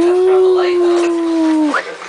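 A dog gives one long howl of about two seconds, rising a little at the start and dropping off at the end.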